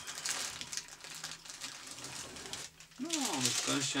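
Plastic packaging rustling and crinkling as it is handled, a continuous fine crackle for the first two and a half seconds or so.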